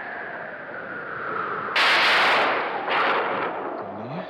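Thunder cracking in a stormy night sound effect, over a steady background of noise. There is a loud crack about two seconds in lasting over half a second, then a shorter one about a second later.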